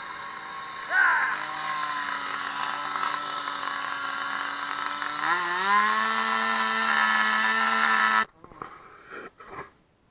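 An engine running steadily, its pitch rising about five seconds in as it speeds up and then holding there, before it stops abruptly. A brief loud pitched cry about a second in.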